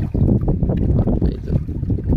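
River water sloshing and splashing around a man wading as he lifts a mesh net trap up out of the water, with wind rumbling on the microphone.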